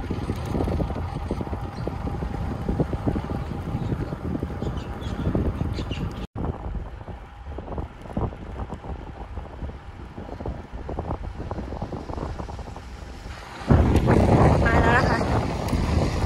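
Wind buffeting an action camera's microphone while riding a road bicycle. It cuts off suddenly about six seconds in, carries on more quietly, and turns loud again about two seconds before the end.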